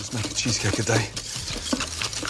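Cream-cheese, sugar and egg batter being beaten vigorously by hand in a ceramic mixing bowl, the utensil scraping continuously against the bowl.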